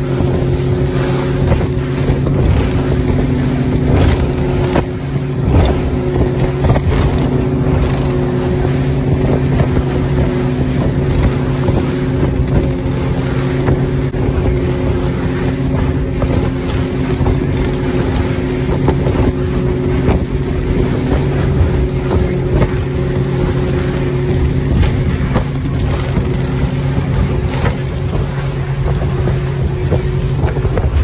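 Motorboat engine running at a steady cruising speed, a constant hum, under a loud rush of water and spray off the hull as the boat runs through choppy sea, with some wind on the microphone.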